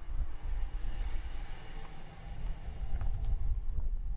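Wind rumbling on the microphone, with a passing vehicle's noise swelling and then fading around the middle.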